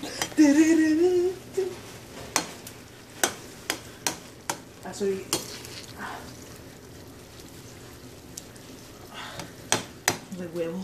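Eggs frying and sizzling in a pan on the stove, with a metal slotted spoon stirring them and clicking against the pan now and then. A brief voice sound comes about half a second in.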